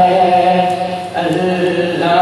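A man chanting a naat (Urdu devotional poem) unaccompanied, holding long melodic notes, with a brief break about a second in before the line resumes.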